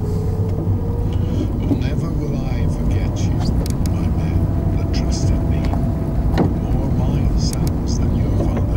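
A car driving slowly along a rough, narrow road, heard from inside the cabin as a steady engine and tyre rumble. A few light knocks and rattles come through, the sharpest about six and a half seconds in.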